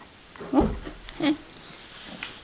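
A horse making two short, loud sounds up against the microphone, about three-quarters of a second apart. The first comes with a low bump against the microphone.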